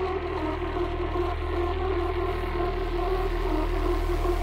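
Hard techno mix in a beatless breakdown: a sustained, droning synth chord over deep held bass tones, with no kick drum.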